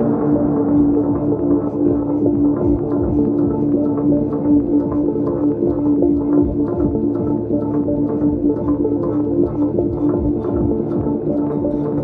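Live ambient instrumental music: steady sustained drone tones, with the Cristal Baschet played in view, under a quick, even percussive pulse.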